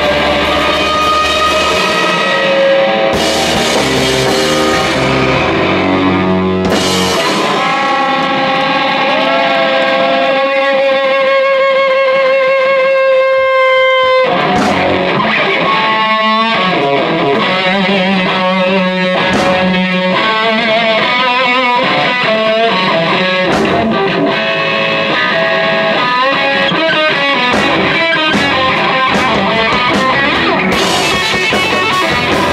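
A live psychedelic post-hardcore rock trio playing an instrumental passage. Distorted electric guitar holds long, wavering notes over bass guitar, and drum and cymbal hits come in about halfway through and grow busier near the end.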